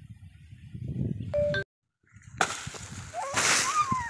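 A pole-mounted dodos chisel jabbed into the base of an oil palm frond: a rising rush of rustling, swishing noise that peaks about three and a half seconds in, after a brief dropout in the sound about a second and a half in.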